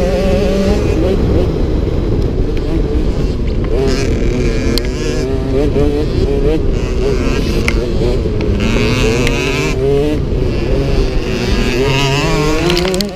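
Motocross bike engine running under throttle, its pitch wavering up and down as the rider works the throttle over the rough track, with heavy wind rumble on the onboard microphone.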